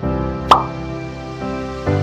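Slow instrumental background music with sustained chords that shift near the end, and a single short water-drop-like plop about half a second in, the loudest moment.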